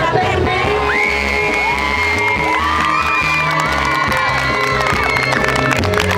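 A pop backing track playing over a PA, with several high, long shouts and cheers from the young audience over it from about a second in.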